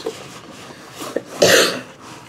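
A single cough from a man who is a little bit sick, about one and a half seconds in.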